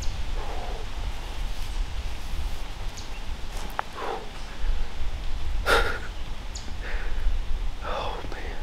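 A steady low rumble, like wind on the microphone, under a few short soft rustles and breaths. The sharpest rustle comes a little before six seconds in.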